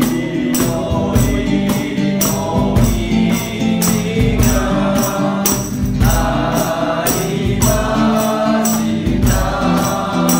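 A mixed choir singing a Japanese Buddhist hymn in unison, in a swinging waltz time, accompanied by a classical guitar and a tambourine struck on a steady beat.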